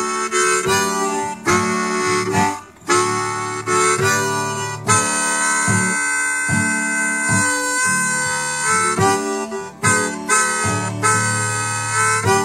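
Blues harmonica played over a strummed acoustic guitar: short rhythmic chords for the first few seconds, then one long held note for about four seconds, then short chords again near the end.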